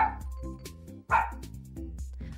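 A dog barking twice, two short barks about a second apart, over steady background music.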